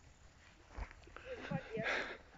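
Soft footsteps through grass, with a brief rustle near the end and faint, distant voices.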